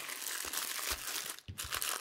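Plastic bags of diamond-painting drills crinkling as they are handled and shifted, with a brief pause about a second and a half in.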